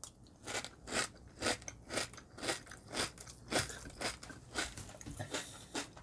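A person chewing a mouthful of crunchy muesli, mostly puffed rice extrudate crisps in milk, close to the microphone: a steady crunch about twice a second.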